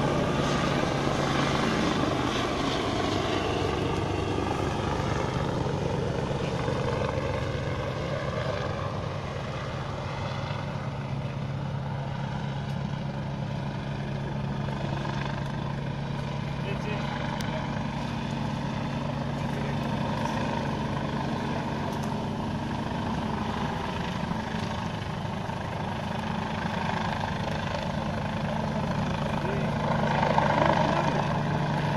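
Helicopter flying at a distance, its rotor and engine a steady drone with a low hum. The drone dips a little about ten seconds in, then holds steady.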